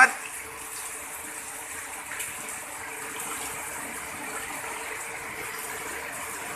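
Steady, even hiss of rain falling on wet paving and puddles, with no break.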